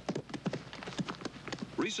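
A bull's hooves pounding the dirt as it charges: a rapid, uneven run of thuds and clatters.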